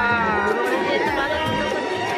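Crowd chatter, many voices talking at once close by, with music faintly underneath.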